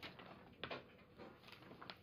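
Faint rustle of glossy magazine pages being turned by hand, with a couple of soft paper taps.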